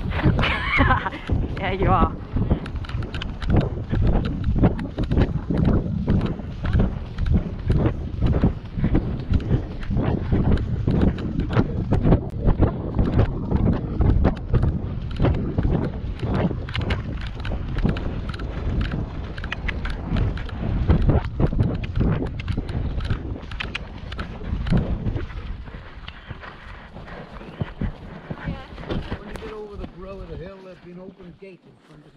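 Hoofbeats of a pony moving at pace over wet grass, close to the rider's camera, a fast run of thuds that eases off and grows quieter about 25 seconds in.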